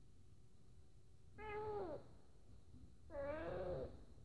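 Long-haired tuxedo cat meowing twice: a short call about a second and a half in that drops in pitch at its end, then a longer, wavering call near the end.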